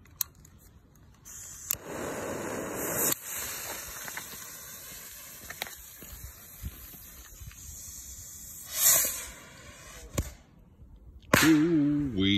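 Homemade bottle rocket's fuse and black-powder motor burning with a long hiss and sputter, loudest for about a second early on, with a short loud burst near the nine-second mark; the motor is too weak.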